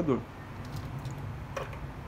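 A pause in speech: steady low room hum, with one faint short tick about one and a half seconds in.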